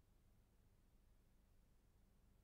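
Near silence, with only a faint steady low hum.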